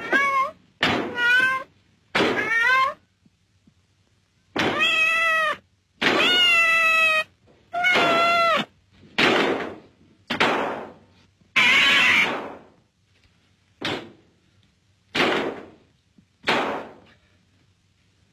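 A cat meowing over and over, about a dozen separate cries. The first several are long and clearly pitched; the later ones are shorter and raspier.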